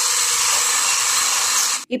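Electric hand blender running steadily in a tall plastic beaker, whipping sour cream and sugar into a cream. It cuts off abruptly near the end.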